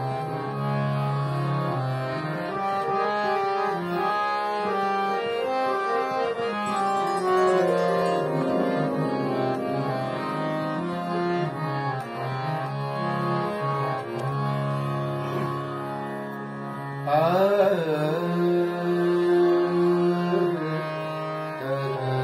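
Harmonium played solo: a melody over held reed chords, with the notes sustained between changes. About three-quarters of the way through it grows louder and a wavering, bending tone joins in.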